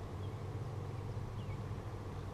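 Steady low hum of honeybees flying around the opened hive, with a couple of faint bird chirps.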